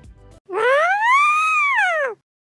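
An edited transition sound effect: one loud pitched tone with overtones that glides up and then back down in an arch, lasting about a second and a half and starting about half a second in.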